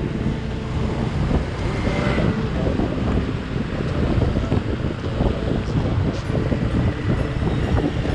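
Wind buffeting the microphone of a camera on a moving motorbike, over the bike's engine and the hiss of tyres and traffic on a wet road.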